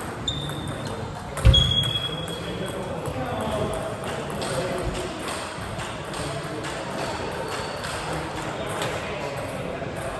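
Table tennis ball being struck and bouncing in a large hall, the last and loudest hit about a second and a half in, each with a short ringing ping. After that the hall carries a murmur of voices and scattered faint ball clicks.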